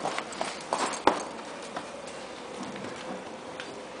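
Hoofbeats of a bay gelding ridden at speed over straw-covered dirt footing, a few sharper strikes in the first second, then fainter ones as the horse moves off.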